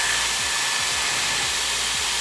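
Dyson Airwrap styler running with its large curling barrel fitted: a steady rush of blown air with a constant high-pitched motor whine.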